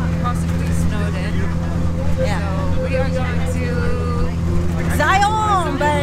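Steady low drone of an open-air tour truck's engine and road noise while riding.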